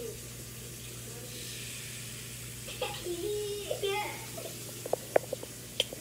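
A faint steady hiss of batter steaming in a small electric waffle maker, with several sharp clicks near the end as things on the counter are handled.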